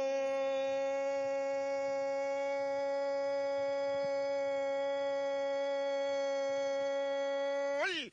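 A male football commentator's long goal cry, one unbroken note held steady for about eight seconds, bending up in pitch at the very end before breaking back into words.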